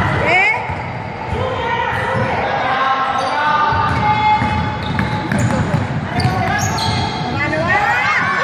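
A basketball being dribbled on a gym floor, with players' and spectators' voices calling out and echoing in the large sports hall.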